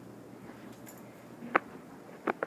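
Quiet room tone with one sharp knock about three-quarters of the way through.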